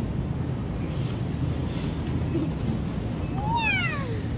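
Shopping cart rolling through a store with a steady low rumble; near the end a young child gives one short, high-pitched squeal that rises briefly and then falls.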